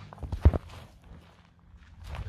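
Footsteps close by, a few short low thumps with the heaviest about half a second in, then quieter.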